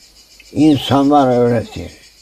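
A man's voice speaks a short phrase starting about half a second in, over a steady high-pitched chirring hiss in the background.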